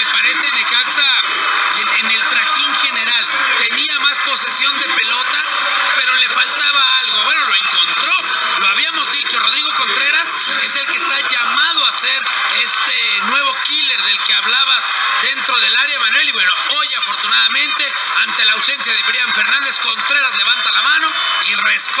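Continuous speech from a Spanish-language radio football commentary, thin-sounding with little bass.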